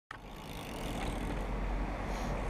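BMX bike's tyres rolling on a concrete skate-park surface: a steady rumble that grows slowly louder.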